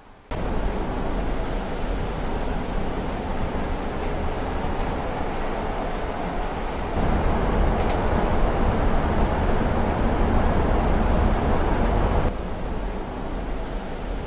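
Mercedes-Benz eCitaro battery-electric city bus driving: a steady low rumble of road and rolling noise. It gets louder for about five seconds in the middle, heard from inside the passenger cabin, and changes abruptly between takes.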